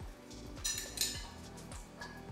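A metal spoon clinking lightly against a small ceramic bowl a couple of times as seasoning vinegar is spooned out over rice. Under it runs soft background music with a steady beat.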